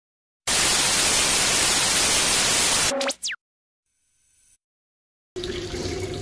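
Television static: a loud, even white-noise hiss for about two and a half seconds. It breaks into a brief electronic burst with fast sweeping whistles, then cuts to near silence. Room sound returns just before the end.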